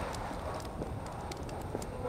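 Footsteps of someone walking on a hard supermarket floor, light ticks about twice a second, over a low steady rumble of store background noise.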